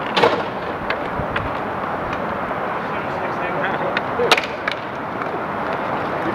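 Inline skate wheels rolling on an outdoor roller hockey court, with sharp clacks of sticks and puck, the loudest about four seconds in.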